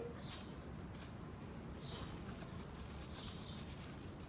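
Quiet handling of nylon string and plastic bag as a knot is pulled and held, with faint light rustles. Faint high chirps come a few times in the background.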